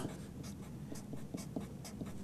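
Sharpie felt-tip marker drawing small plus signs on paper: a quick series of short, soft pen strokes.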